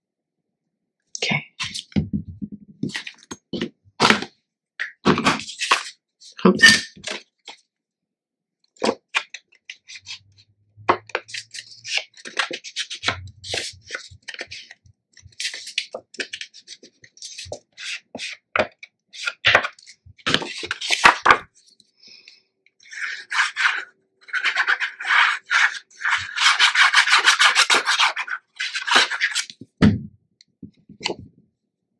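Cardstock and patterned paper handled on a cutting mat: scattered taps, clicks and rustles, then several seconds of continuous rasping rubbing near the end.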